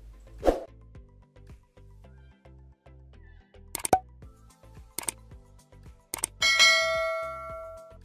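A few sharp clicks, then a bell-like ding about six seconds in that rings with several steady tones and fades away, the kind of notification-bell sound that goes with an on-screen subscribe button.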